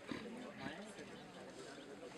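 Quiet, low murmured human voices.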